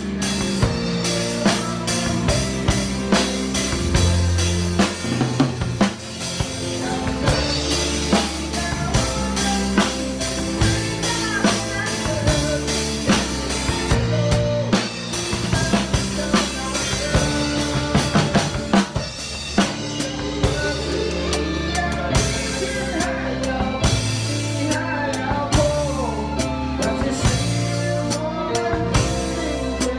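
Drum kit played along with a recorded song: snare, bass drum and cymbal hits in a steady groove over the track's bass and other instruments.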